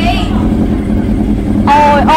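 Honda CB400 motorcycle engine idling steadily, with a voice coming in near the end.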